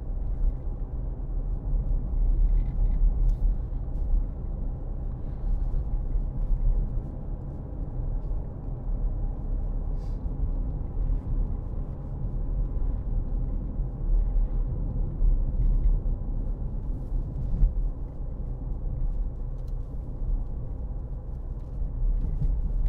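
Cabin sound of a 2013 Porsche Cayenne with a 3.0-litre V6 diesel, on the move: a steady low rumble of engine and road noise that holds even throughout.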